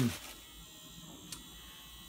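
Faint steady buzzing whir of the small battery-powered motor in a toy bus music box, rocking the bus back and forth on its base, with a single click a little over a second in.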